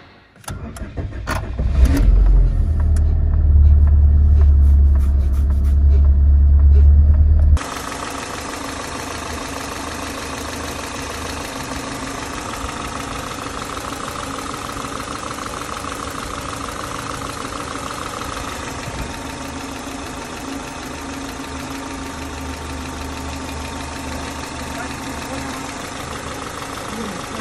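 A Peugeot 206's four-cylinder petrol engine cranked and started, a loud low rumble for about five seconds heard from inside the car. After a sudden cut near the end of that, the engine is idling steadily, heard from the open engine bay.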